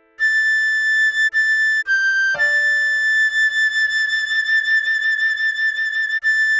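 A recorder playing a slow melody: two short A notes, a slightly lower G, then a long held A. A soft piano chord comes in under the held note.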